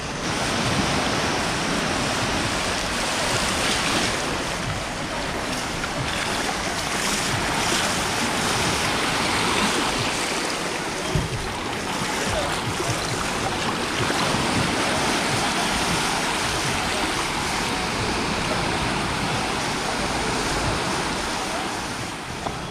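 Small sea waves washing in over the sand and around bare feet in the shallows, a steady rush of surf.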